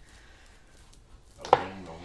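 Faint rolling of a rolling pin over sugarpaste on a plastic board, then one sharp knock of the rolling pin against the board about one and a half seconds in.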